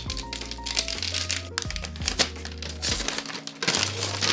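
Shiny gift-wrapping paper being torn and crinkled as a small present is unwrapped. Background music with held bass notes plays underneath.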